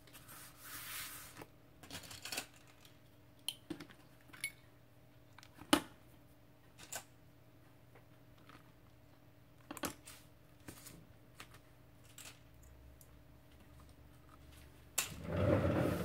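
A brief rustle of hands pressing and smoothing a glued paper page, then scattered clicks and taps as metal bulldog and binder clips are handled and clamped onto the page edges, the sharpest snap about six seconds in. A voice starts near the end.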